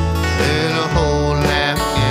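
Country music: a band with acoustic guitar over a bass line, with a higher melody line that slides between notes.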